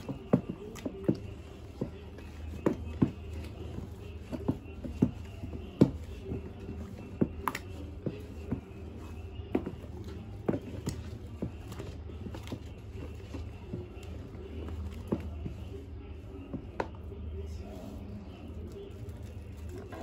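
Wooden stick stirring thick, foamy liquid soap in a plastic basin, with irregular sharp knocks about once or twice a second as the stick strikes the basin. The knocks come more often in the first half. A steady low hum runs underneath.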